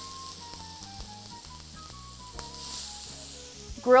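Shrimp skewers sizzling with a steady hiss on a hot, oiled cast iron grill pan as they are laid across the grates.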